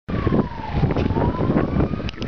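Fire engine siren wailing, its pitch sliding slowly down and then back up, over a heavy low rumble of noise.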